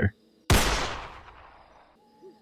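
A single rifle shot about half a second in, followed by a long echo that fades away over about a second and a half.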